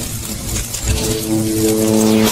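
Logo-animation sound effect: a loud noisy whoosh over a low rumble, joined about a second in by a steady held tone.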